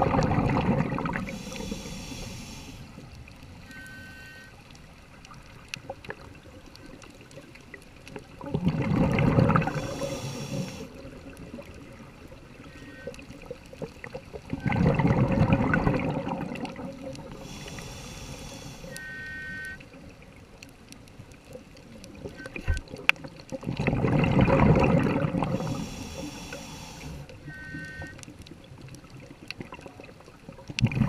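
Scuba diver breathing through a regulator underwater: bursts of exhaled bubbles rumbling out four times, with fainter hissing inhalations between them.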